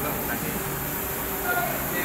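A steady machinery drone with faint voices mixed in.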